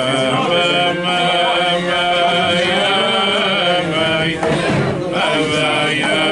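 A group of men singing a wordless Hasidic niggun together, in long held notes, with a short break a little past the middle.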